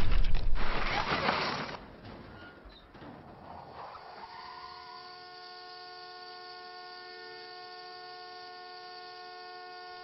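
The loud clatter of a car crash dies away over the first two seconds. From about four seconds in, a car horn sounds without a break, one steady note.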